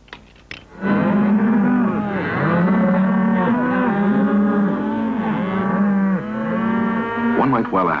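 A herd of cattle mooing, with many calls overlapping and rising and falling in pitch. The mooing starts about a second in and carries on until near the end.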